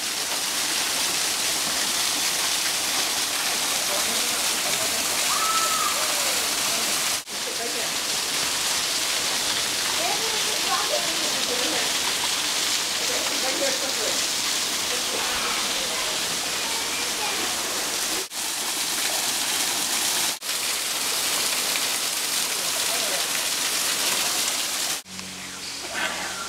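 Steady rushing noise of a waterfall, with faint distant voices. The sound breaks off for an instant three times.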